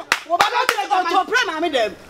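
A person talking animatedly, with three sharp hand claps in the first second.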